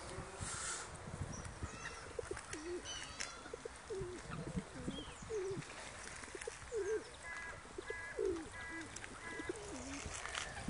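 Canada geese on a frozen lake giving short, soft low calls over and over, quietly. Faint higher bird chirps join in the second half.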